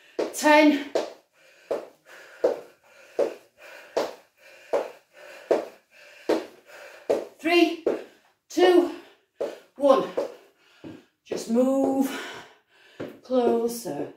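A woman's short, rhythmic vocal exhalations during a high-intensity exercise, a little more than one a second in time with each repetition, some voiced like grunts.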